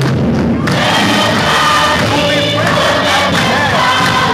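A congregation singing together and clapping along, many voices at once.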